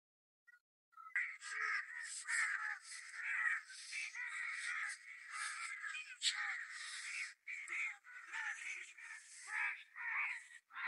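Crows cawing: many harsh, overlapping calls that begin abruptly about a second in and carry on without pause.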